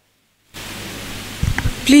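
Dead silence, then about half a second in a steady hiss of room and microphone noise cuts in, with a few low thumps. A voice begins speaking right at the end.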